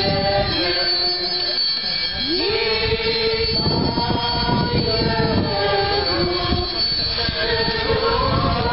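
Brass band playing a slow hymn in long held chords, with a rising slide into a new chord about two and a half seconds in.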